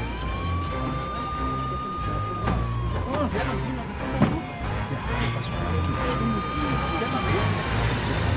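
Police car siren wailing in slow cycles: the tone rises at the start, holds high, falls about three seconds in, then rises again and falls once more near the end.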